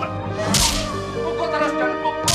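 A sharp whip-crack-like hit sound effect about half a second in, marking a blow in a fight, over background music.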